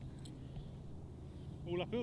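Quiet outdoor background with a steady low hum, then a man's voice begins just before the end.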